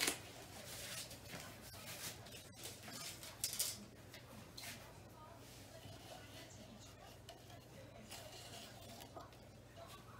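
Quiet handling noise on a work table: a sharp knock at the very start, then a few short rustles and light clatter, over a steady low hum.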